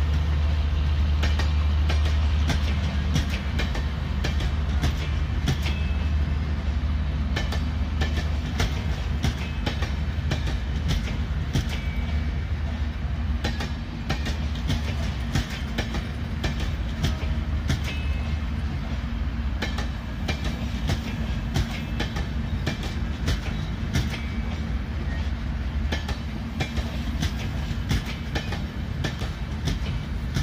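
Indian Railways passenger coaches rolling slowly past, their wheels clicking and clacking irregularly over the rail joints. A low rumbling drone runs under the clicks and is loudest in the first couple of seconds.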